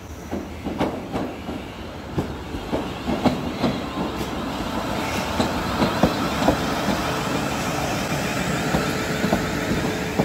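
South Western Railway Class 450 Desiro electric multiple unit approaching and running past, its wheels clicking over rail joints, getting louder as it draws level. A steady electric hum joins in about halfway.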